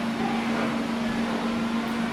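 A steady electric hum with a low hiss, unchanging throughout.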